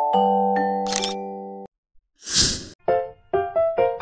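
Background music: sustained mallet-like chords with camera-shutter clicks at the start and about a second in, then a short break, a brief burst of noise, and a run of separate piano notes.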